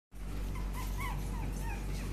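Chihuahua puppies whimpering: about six short, high squeaks in quick succession, each rising and falling, over a steady low hum.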